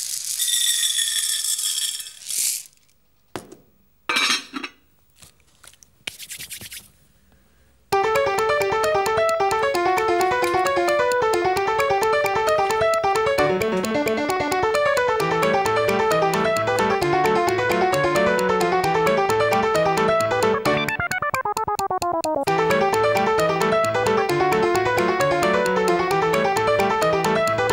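Dry popcorn kernels poured into a glass saucepan, rattling for about two seconds, followed by a few short knocks and clinks. About eight seconds in, a bouncy keyboard music track begins with a bass line, with a falling slide near the end.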